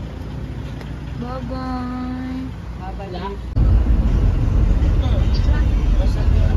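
A vehicle engine idling under a few voices, one of them calling out a long held note. About three and a half seconds in, the sound cuts abruptly to a much louder low rumble of engine and road noise heard from inside a moving car.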